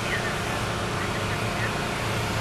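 Steady low hum of a vehicle engine running at idle, with a few faint short chirps now and then.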